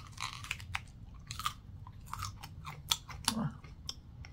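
A man bites into a raw green seven-pot pepper with a sharp snap right at the start, then chews it with irregular crisp crunches.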